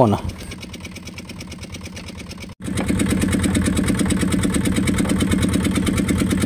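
Fishing boat's engine running steadily with a fast, even beat, fairly quiet at first and much louder from a sudden break about two and a half seconds in.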